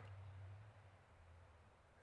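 Near silence: faint background ambience with a low hum that fades during the first second.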